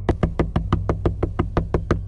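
Rapid knocking on a wooden door, several sharp knocks a second in a fast, even run, over a low, steady music drone.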